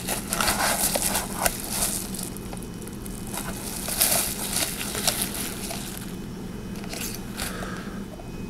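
Plastic bubble-wrap packaging crinkling and crackling in the hands, with some cardboard box rubbing, as a small clock is slid out of its box and unwrapped. The crinkling comes in irregular bursts, thickest near the start, around the middle and near the end.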